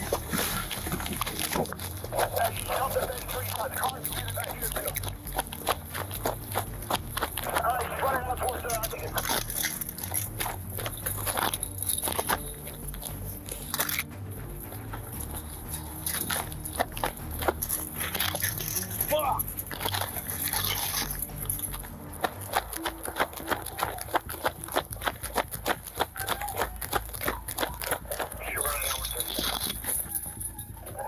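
A police officer running on foot in pursuit, heard from the body-worn camera: rapid footfalls with gear and the camera rattling and knocking, and heavy breathing. Some short bursts from a police radio can be heard, too indistinct to make out.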